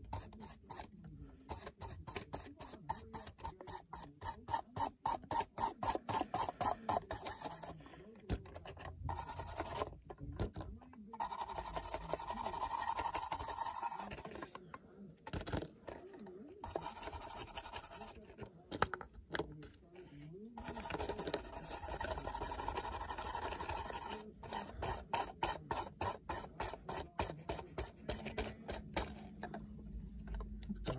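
Paintbrush scrubbing pastel chalk onto the side of an HO scale model boxcar: quick scratchy strokes, several a second, in spells with short pauses between.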